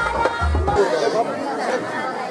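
Traditional procession music with a held reed wind instrument and a deep drum beat, which breaks off under a second in. A crowd's mingled chatter and voices follow.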